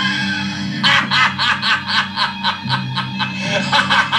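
Laughter in quick, repeated 'ha' sounds, a sampled film laugh, over music with a steady low bass line.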